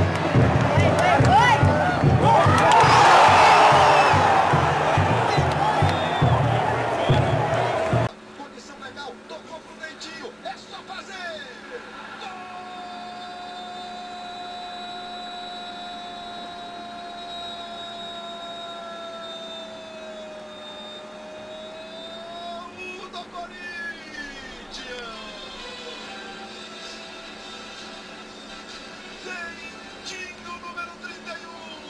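Football crowd in the stands singing and cheering, loud for about the first eight seconds, then cut off suddenly. After the cut comes quieter TV broadcast sound with faint voices and one long held tone that dips slightly at its end.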